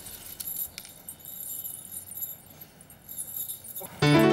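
Quiet clinking and jingling of glass bangles on a woman's wrist as she moves her hand.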